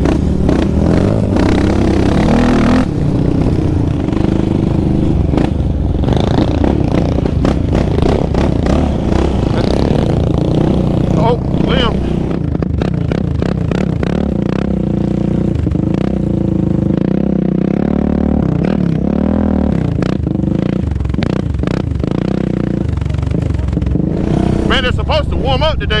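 Yamaha Raptor 700R sport quad's single-cylinder engine running hard on a trail, its pitch rising and falling with the throttle and climbing in several revs, with wind on the microphone.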